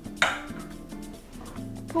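One sharp clack of glassware being handled on a glass tabletop, about a fraction of a second in, over quiet background music.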